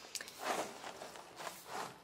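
Cardboard cereal box being handled and tilted, with two soft rustles of the box and the flakes shifting inside: one about half a second in, the other near the end.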